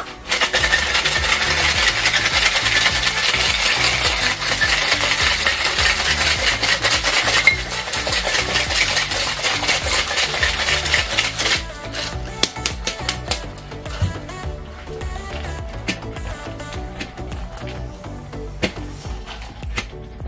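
Ice rattling hard inside a metal cocktail shaker being shaken, a dense continuous rattle for about eleven seconds that then thins to sparser, quieter knocks.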